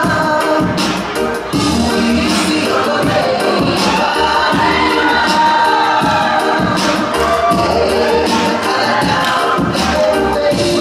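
Song with singing and backing music accompanying a Tongan tau'olunga dance, with a beat, and the voices of a crowd of guests over it.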